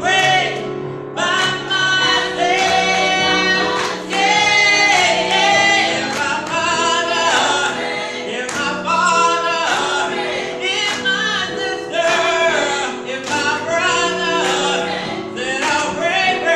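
A small gospel praise team of men and women singing together into microphones, in continuous phrases over steadily held low notes.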